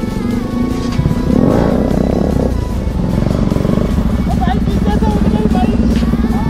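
Motorcycle engine running steadily under way, mixed with a song that has singing in it.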